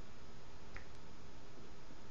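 Steady low hiss of room tone, with one faint short click about three-quarters of a second in.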